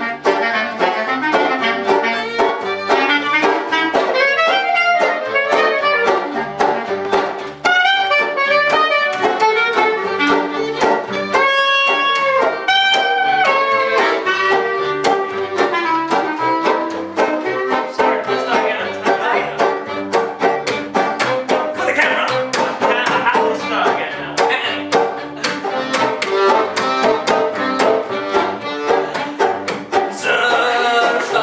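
Small acoustic string band playing an instrumental passage at a steady beat, with fiddle, banjo, accordion and double bass.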